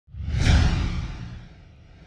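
Whoosh sound effect from an animated intro, with a deep rumble under a hissy rush, swelling quickly to a peak about half a second in and fading away over the next second.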